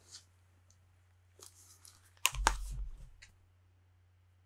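Over-ear headphones being taken off and set down on a desk: faint handling scuffs, then a sharp click with a low thud and rustle a little past the middle.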